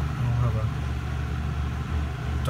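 Vintage Superior Electric three-speed box fan running, its motor and blades giving a steady low hum with a slight bearing rattle.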